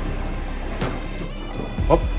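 Background music over a Hotpoint Ariston washing machine filling its drum with water through the inlet valve, which shuts off near the end as the pressure switch registers the water level.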